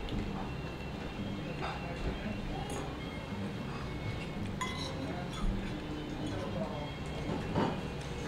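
Cutlery clinking against a plate a few separate times, over a steady low hum.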